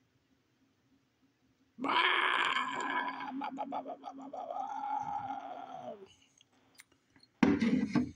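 A man's drawn-out wordless vocal sound lasting about four seconds, held at a steady pitch and running into a laugh. A short, loud vocal burst follows near the end.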